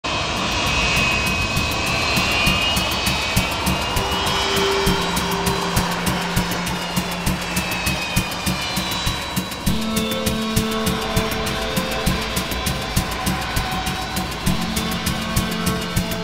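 Antonov An-124's four D-18T turbofan engines running as the freighter taxis: a steady rush with a high whine that slowly falls in pitch. Background music with held notes and a steady beat comes in about four seconds in and grows more prominent toward the end.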